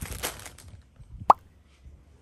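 Clear plastic bag crinkling as a bagged plush toy is handled and set down, then, a little past halfway, a short, loud pop sound effect with a quick rise in pitch.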